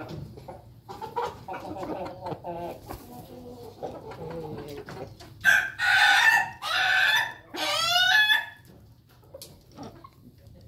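Chickens clucking softly, then a rooster of the ayam ketawa (laughing chicken) kind crows loudly about halfway through: two long notes and a final phrase broken into a quick run of short notes, the laughing-style crow the breed is kept for.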